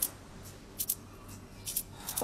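Short rustles of a cloth garment being handled, two brief ones about a second apart, in a quiet room.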